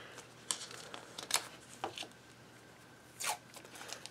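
Washi tape being pulled off its roll and torn by hand, with light paper handling: four short, sharp rips over a faint rustle.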